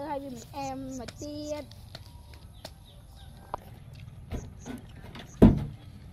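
A girl's voice speaking briefly at the start, then a few soft clicks and knocks, and a loud, deep thump about five seconds in.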